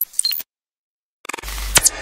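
Sound effects of an animated logo intro: a few short clicks and high beeps, a gap of silence, then a low hit with a burst of noise and sharp shutter-like clicks in the second half.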